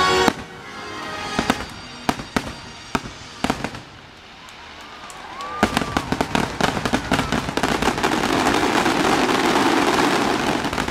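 Aerial fireworks: orchestral music breaks off at the very start, then a few separate sharp bangs, and from about halfway a dense barrage of rapid bangs and crackling.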